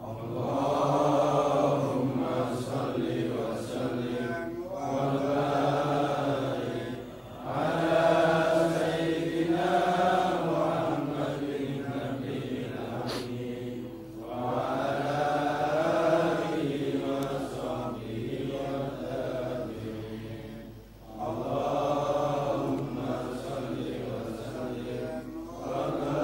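Male chanting of an Arabic sholawat refrain, sung in long melodic phrases of a few seconds each with short breaths between them.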